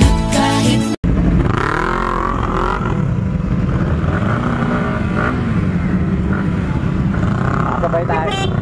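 Background music that cuts off abruptly about a second in, followed by the steady running of several motorcycle engines, with voices of people scattered through it.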